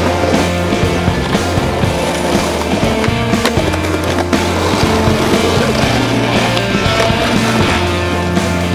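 Music with a steady bass line, over skateboard wheels rolling on concrete pavement, with a couple of sharp clacks from the board around the middle.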